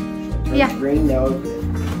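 Background music with a plucked-guitar tune and a steady bass line, under voices.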